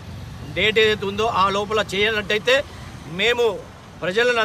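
A man speaking, in phrases with short pauses between them.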